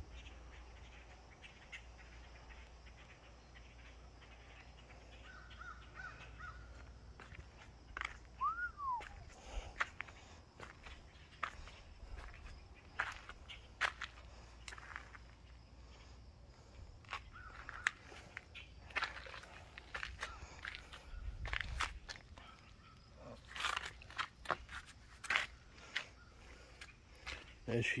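Outdoor ambience: scattered bird calls and short sharp clicks, one a rising-then-falling chirp about eight seconds in, over a faint low rumble.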